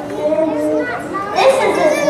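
Children's voices talking over one another in a large hall, with several voices at once and louder in the second half.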